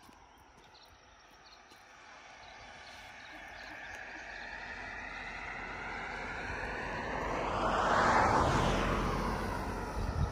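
A passing vehicle, growing steadily louder to a peak about eight seconds in and then starting to fade.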